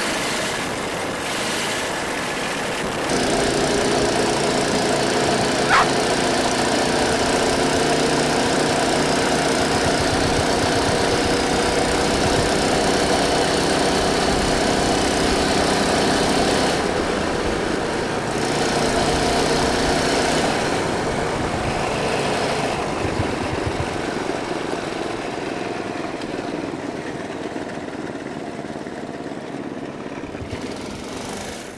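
Go-kart's small engine running under throttle as the kart drives on pavement, with tyre and wind noise. The engine note picks up about three seconds in, holds steady, eases off around seventeen seconds, comes back briefly, then fades near the end; one sharp click sounds about six seconds in.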